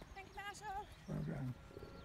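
Distant voices of spectators calling out: a high, wavering call in the first second, then a short, louder deep-voiced shout about a second in.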